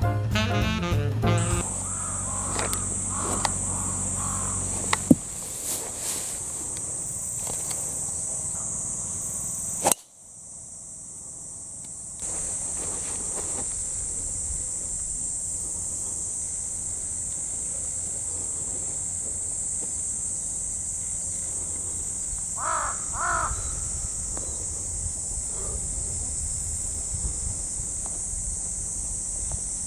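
Jazz saxophone music ends about a second in, giving way to open-air ambience with a steady high-pitched hiss. A bird calls twice, briefly, about 23 seconds in.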